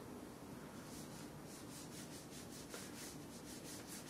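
Faint rubbing of paintbrush bristles on canvas in quick, short strokes, several a second.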